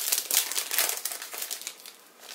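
Clear plastic packet of graphite paper crinkling as it is handled, an irregular run of crackles that fades toward the end.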